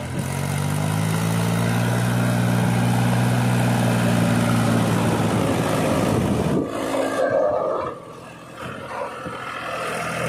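Mahindra 265 DI tractor's three-cylinder diesel engine working under load as it pulls a fully loaded soil trolley. The engine runs loud and steady for about six seconds, then turns quieter near the end.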